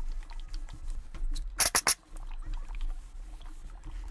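Steam iron sliding over linen fabric with soft scraping and rustling, broken about one and a half seconds in by four short hisses of steam in quick succession.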